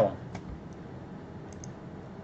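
A few faint clicks at a computer, two of them close together about a second and a half in, as the on-screen chart is switched, over a low steady room hum.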